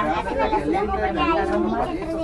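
Several people talking at once, overlapping voices with no clear words, with a low steady hum underneath.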